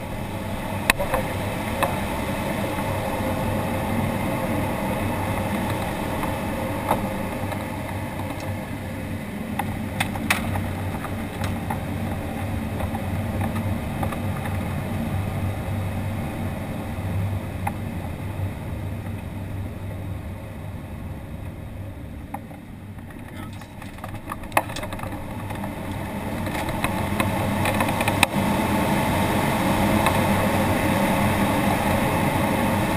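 Air rushing over the canopy of an ASK-21 glider, heard from inside the cockpit, swelling and easing with airspeed through aerobatic manoeuvres. It dips a little past two-thirds of the way through and grows louder again near the end, with a few sharp clicks along the way.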